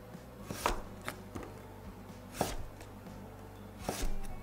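Chef's knife push-cutting through Korean radish on a wooden cutting board: about four separate, unhurried cuts, each a short slicing swish ending in a knock of the blade on the wood, the loudest about two and a half seconds in.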